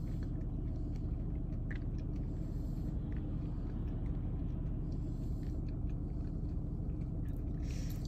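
A person chewing a mouthful of soft carrot cake with cream cheese frosting and licking frosting from her fingertips: faint, scattered wet mouth clicks over a steady low hum.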